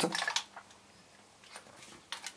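Faint handling of an airsoft rifle replica: a few soft clicks and rustles in the first half-second as it is lifted and turned in the hands, and a faint rustle near the end, over quiet room tone.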